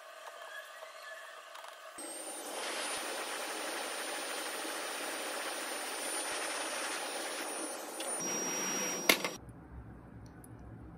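Hot-air rework station blowing steadily, with a thin high fan whine, for about seven seconds. It is switched on about two seconds in and cuts off with a click just after nine seconds.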